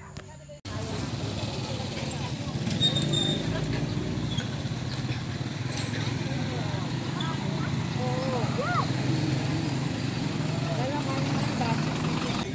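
Outdoor street-market ambience: indistinct voices and chatter over a steady low vehicle engine rumble. The sound cuts out briefly just under a second in.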